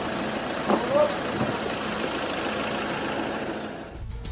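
A vehicle engine running steadily at idle, with a few brief voices about a second in.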